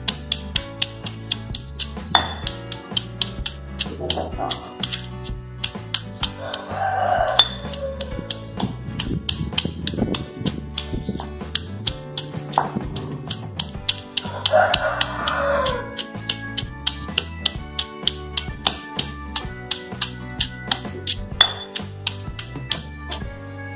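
Background music with repeated thuds of a stone pestle pounding shallots and garlic into curry paste in a stone mortar.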